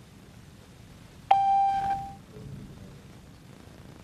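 A single electronic beep about a second in: one clear tone, sharp at the start, lasting under a second.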